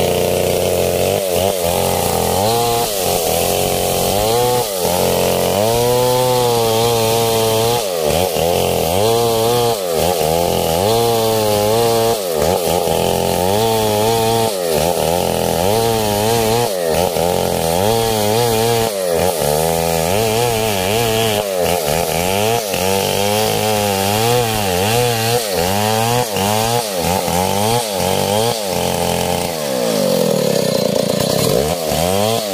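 A STIHL 070 two-stroke chainsaw running hard as it rips planks lengthwise, its engine pitch rising and falling again and again as the chain bites into the wood and frees up.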